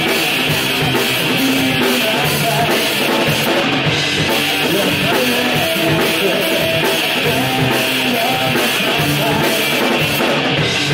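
Live rock band playing loudly and steadily: electric guitars and a drum kit.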